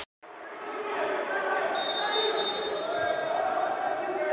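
Live sound of an indoor futsal match: voices of players and spectators echoing in a gymnasium, with a futsal ball thudding on the wooden court. It starts abruptly after a brief silence.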